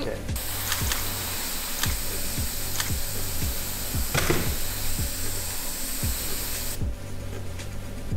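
Airbrush spraying fake blood: a steady hiss of compressed air that starts a moment in and cuts off sharply about a second before the end. Background music with a steady beat plays underneath.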